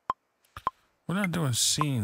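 A software metronome clicking steadily, a little under two clicks a second with a pitched tick, and a higher-pitched click marking the start of each bar. From about halfway in, a man's voice vocalizes over the clicks without clear words.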